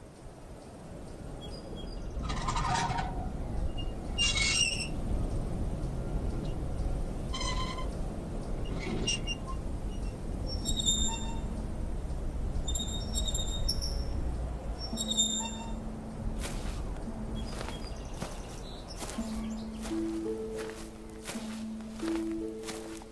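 Film soundtrack ambience: a low rumbling drone with scattered bird-like calls and chirps over it. Low held notes come in during the second half, with higher notes joining near the end.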